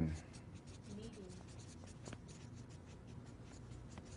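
Felt-tip marker writing on a flip-chart pad: faint, quick scratching strokes on the paper, one after another.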